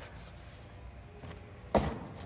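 Quiet room tone, with one short noise near the end.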